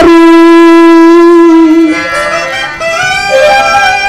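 Accompaniment music from a reed instrument holding long, steady notes: one loud sustained note for about two seconds, then it drops in level and moves through quieter notes before settling on a higher held note near the end.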